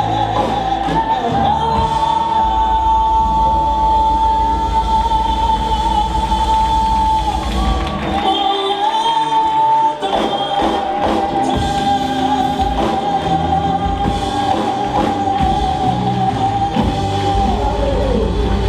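Live gospel worship music: a woman singing lead through a microphone over instrumental accompaniment, holding long notes.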